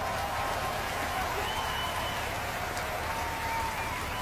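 Steady outdoor background noise, an even hiss over a low rumble, with a few faint thin tones drifting over it.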